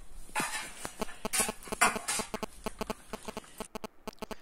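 Baking paper crinkling and rustling in irregular crackles as a baked loaf is handled on it, thinning out near the end.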